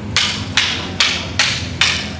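Wooden practice sticks clacking together in a single-stick weave drill: five sharp strikes in an even rhythm, about two and a half a second.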